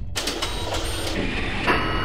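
Electronic IDM music in a sparse passage: clicking electronic percussion and a few thin high tones over a low bass.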